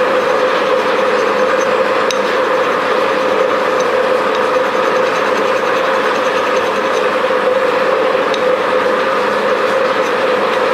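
Electric bench buffer running at a steady speed: a constant whir with a steady hum.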